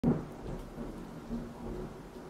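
A brief spoken "CQ" amateur-radio call at the very start, then a low rumbling hiss of radio static.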